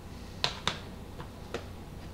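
A few sharp plastic clicks from Blu-ray cases being handled: two close together about half a second in, then two lighter ones about a second later.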